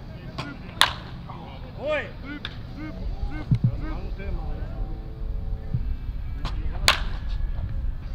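Wooden baseball bat hitting pitched balls in a batting cage: two sharp cracks, one about a second in and another near the end, with a shout shortly after the first.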